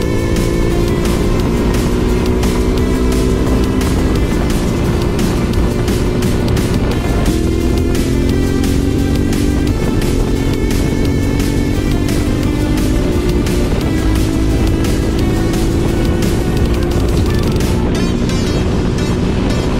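Electronic background music with a steady beat over a Yamaha Ténéré 700's parallel-twin engine accelerating at speed, its pitch climbing and dropping back at gear changes several times.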